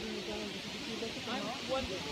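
Faint, distant voices talking, over a steady background hiss.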